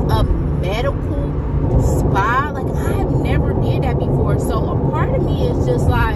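A woman's voice speaking and exclaiming in short bursts, some rising sharply in pitch, over the steady low rumble of a car's road noise heard from inside the cabin.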